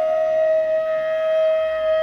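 Background music: a flute holding one long, steady note, which bends slightly down in pitch at the very start.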